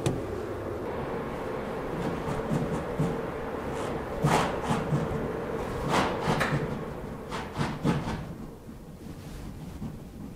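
Steady hum of a garage heater, with several light knocks and clatters between about four and eight seconds in.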